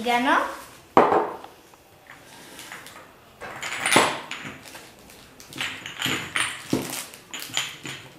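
Glass spice jars and bottles clinking and knocking against each other and a wire basket as they are rummaged through, with several sharp knocks, the loudest about a second in and around four seconds in.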